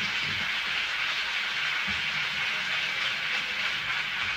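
A steady hiss of noise with no music or voice.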